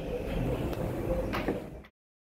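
The glass-panelled automatic sliding doors of an Orona 3G elevator finish closing over a steady low rumble, with two sharp clicks as they shut. The sound cuts off abruptly near the end.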